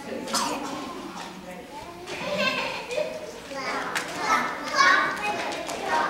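Many young children's voices talking and calling out at once, high-pitched and overlapping, echoing in a large hall. The voices are loudest near the end.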